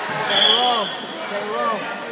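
Two drawn-out shouts from a spectator, each rising then falling in pitch, ringing in a large gym hall, with a steady high squeal under the first shout.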